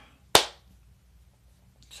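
A single sharp hand clap about a third of a second in.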